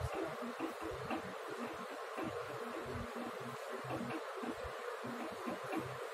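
Whiteboard duster rubbing back and forth over a whiteboard as it is wiped clean: a rapid, uneven scrubbing that runs on without a break.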